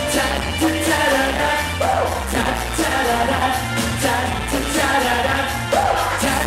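Male singers performing a pop song into microphones over loud amplified backing music with a steady beat.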